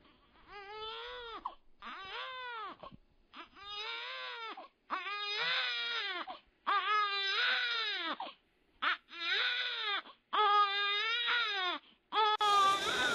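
A newborn baby crying in a run of about seven wails, each rising and then falling in pitch. The cries grow louder from about five seconds in.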